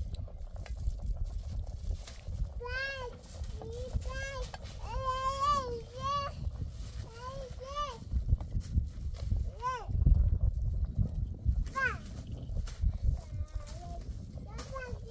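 A toddler's high-pitched, wordless calls and babbling in short rising-and-falling bursts, several in a row in the first half, then a few single calls later, over a low rumble of wind on the microphone.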